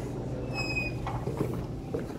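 A glass-and-aluminium entrance door squeaks as it swings open: one short high-pitched squeak about half a second in, over a steady low hum.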